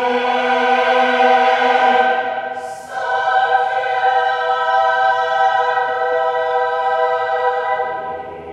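Men's chamber choir singing a cappella in a reverberant church, holding long sustained chords. The first chord fades about two seconds in and is followed by a brief hiss. A new chord then swells and is held until it is released near the end, leaving a fading echo.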